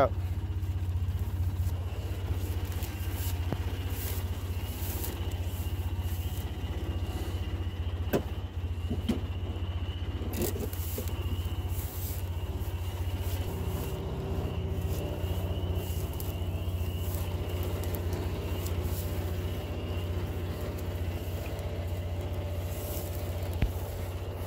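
Engine of a Ranger side-by-side utility vehicle idling steadily, with scattered short rustles and clicks over it.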